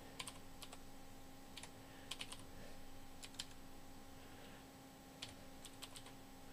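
Computer keyboard typing: faint, irregular single keystrokes and short quick runs of key clicks, over a steady low electrical hum.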